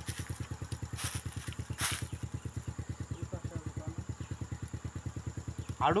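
A small engine running steadily at idle, a fast, even low pulsing. Two short hissing noises come about one and two seconds in.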